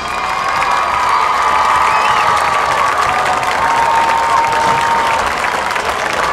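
Stadium crowd applauding and cheering at the end of a marching band performance, a steady wash of clapping with a few held shouts over it.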